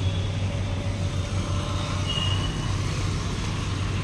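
Street traffic noise: a steady drone of vehicle engines, with a short high-pitched beep about two seconds in.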